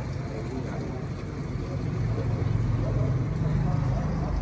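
Electric water pump running with a steady low hum as it pumps water into the aquarium tanks.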